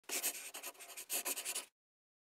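A brief scratchy sound effect, like a pen scribbling quickly on paper, in two bursts of rapid strokes that cut off suddenly.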